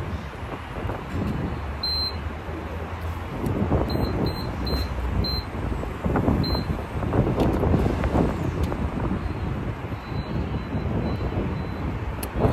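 Street traffic and wind on the microphone, with several short high electronic beeps in the first half, which fit key presses on a gas pump's keypad.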